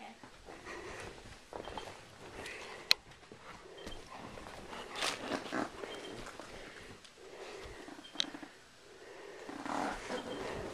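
Dog sniffing and snuffling right at the camera while its fur rubs and brushes against the microphone, with scattered handling rustles and a couple of sharp knocks, one about three seconds in and one near the end.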